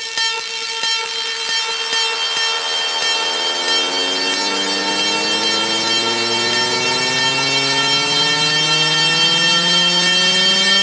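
Electronic dance music build-up: a synth riser, a pitched tone with many overtones gliding steadily upward in pitch and growing louder over several seconds, over a sustained high chord.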